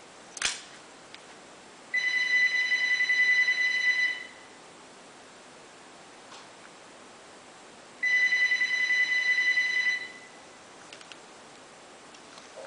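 A phone ringing: two rings of one high tone, each about two seconds long and about four seconds apart. There is a short click about half a second in.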